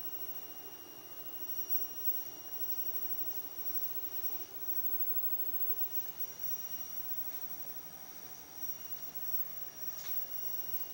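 Faint, steady high-pitched electronic whine from the self-oscillating ignition-coil oscillator circuit as it runs and lights the bulb, over a low hiss.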